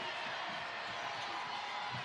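Basketball arena crowd noise: a steady murmur of many voices.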